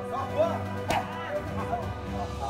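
Background music with one sharp smack about a second in: a strike landing on a Thai pad.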